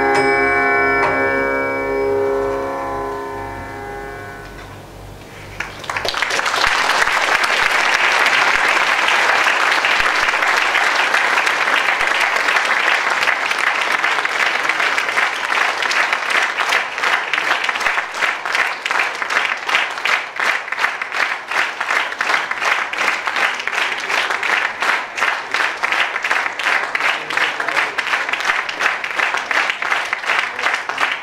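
A held note from violin and accompanying instruments fades out over the first few seconds. Then an audience breaks into applause, which goes on steadily, the claps growing more regular in the second half.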